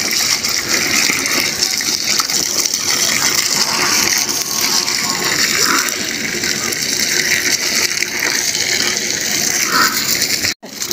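Water pouring steadily from a hose onto a heap of chopped straw and earth, while a hoe chops and scrapes through the wet mix.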